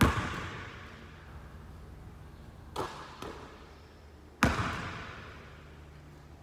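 A basketball bouncing on a gym floor: two loud bounces, one at the start and one about four and a half seconds in, each echoing for about a second, with two lighter knocks shortly before the second.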